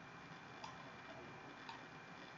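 Two faint clicks about a second apart, typical of a computer mouse, over quiet room tone.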